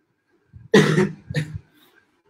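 A man coughing twice: a loud cough a little under a second in, then a shorter one about half a second later.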